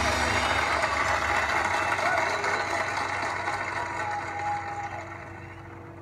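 Background hubbub with indistinct voices, fading out steadily to the end.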